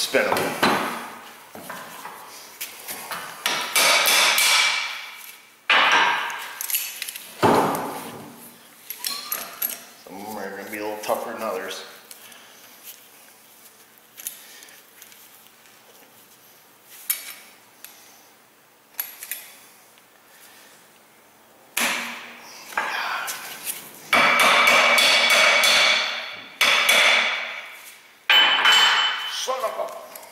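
Steel tools working a rusted, seized driveshaft U-joint: bursts of metal clanking and ringing, each lasting a second or two, with the loudest run near the end.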